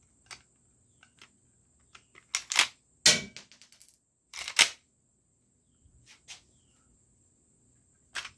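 Marlin 1894C lever-action rifle being cycled by hand: the lever is worked open with sharp metallic clacks about two and a half seconds in, a live cartridge is ejected with a brief metallic ring, and the action closes with another loud clack about halfway through, followed by a few faint clicks.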